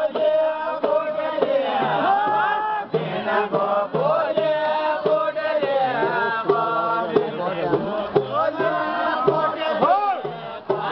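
A group of men singing a Kumaoni folk song together while dancing in a ring, several voices overlapping and holding long sung notes, with crowd noise around them.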